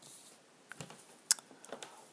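Handling noise from sheets of paper being moved and turned close to a handheld camera: a few light clicks and taps, with one sharper click a little past the middle.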